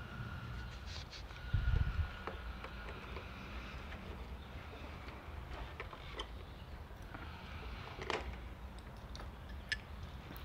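Quiet handling noise and small scattered clicks of hands and pliers working a rubber vacuum hose off a motorcycle carburetor, with a dull bump about one and a half seconds in.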